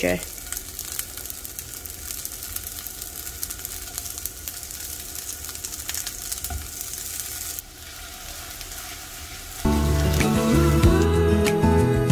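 Hara bhara kababs (vegetable patties) shallow-frying in a little ghee in a nonstick pan on low heat, a soft, steady sizzle with fine crackles. Loud background music comes in about ten seconds in.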